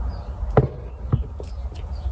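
Light handling noise from a pair of leather sandals stuffed with tissue paper as they are held and turned, with two soft knocks, about half a second and a second in, over a low steady hum.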